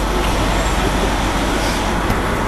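Steady low rumble of an idling coach engine and street traffic.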